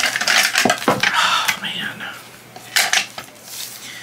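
Small hard objects clattering and clinking as someone rummages through a container, searching for a tape measure. There is a dense run of clatter in the first second and another short clatter about three seconds in.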